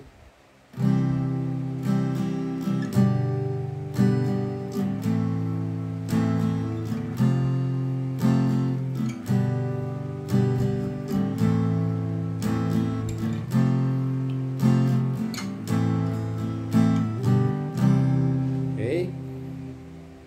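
Fender cutaway acoustic guitar strummed in a steady, repeating down-and-up strumming pattern through a chord progression, with the chord changing about every two seconds. The strumming starts about a second in and stops just before the end.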